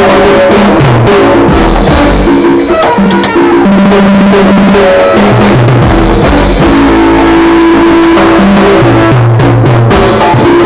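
Live cumbia band playing loud on stage: held keyboard notes over a bass line, drum kit and percussion.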